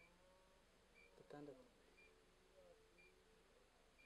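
Near silence in a pause between speech, with a brief faint voice sound about a second in and faint short high chirps about once a second.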